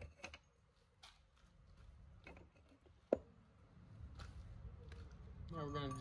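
A few faint clicks and one sharp metallic tap with a short ring about three seconds in, as a hammer works the steel pin of an excavator bucket thumb to open a gap for a shim.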